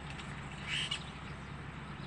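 Steady low hum inside a car, with a brief faint higher-pitched sound about three-quarters of a second in.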